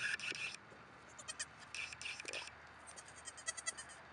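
Newborn Nigerian Dwarf goat kids bleating: high-pitched cries in four short bursts.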